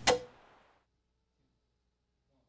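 Old CRT television switch-off sound effect: a sharp click with a short ringing tone cuts off the hiss of static and fades within a second, then silence.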